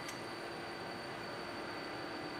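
Steady background room tone: an even hiss with a steady low hum and a faint high whine. There is a faint click right at the start.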